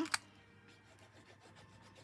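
A sharp click just after the start, then the tip of a liquid glue bottle rubbing faintly over the back of a cardstock tag as glue is spread, a light scratchy sound.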